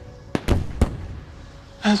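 Fireworks going off: a few sharp bangs in the first second, one small and two louder, irregularly spaced.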